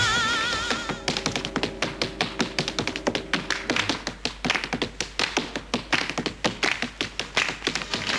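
Tap dancing on a wooden tabletop: a fast, uneven run of sharp tap-shoe strikes, with light musical accompaniment underneath. A held sung note with vibrato fades out in the first second before the taps begin.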